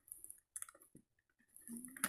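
A few faint clicks and crackles of a clear plastic blister package being handled as a die-cast model truck is worked out of it, all in the first second, then near silence.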